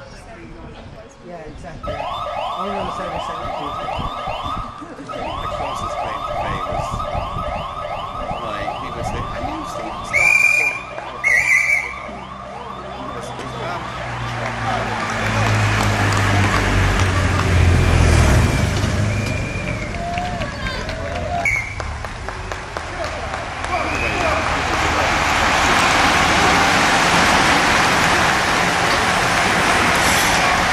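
A siren sounds in rapid repeated sweeps for about ten seconds, with two short, loud horn-like blasts near its end. A motor vehicle then rumbles past, and a broad rushing noise builds and is loudest near the end as a bunch of racing cyclists sprints by close to the microphone, with spectators at the roadside.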